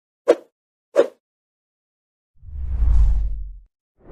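Two short, hollow knocks about two-thirds of a second apart, then a low rumble with a faint hiss that swells up and fades away over about a second. These are the sparse opening sounds of a recorded track.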